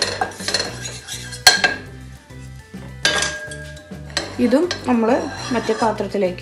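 Wooden spatula scraping and knocking against a dry stainless steel frying pan while ground asafoetida and turmeric are dry-roasted without oil, with one sharp clink about one and a half seconds in. Faint background music runs underneath.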